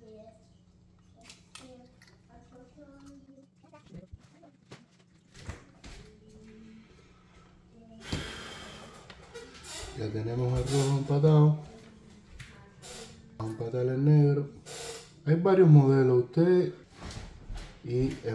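Faint clicks and small taps from handling wires and a soldering iron on a circuit board, then a short breathy rush of air about eight seconds in. In the second half a man's voice mutters indistinctly in several short bursts, louder than the handling.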